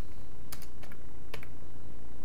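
Computer keyboard keystrokes: a few separate, unhurried key presses, some in quick pairs, as a password is typed. A steady low hum runs underneath.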